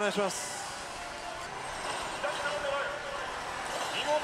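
Steady background din of a pachinko parlour, with faint short electronic tones from the pachislot machines partway through.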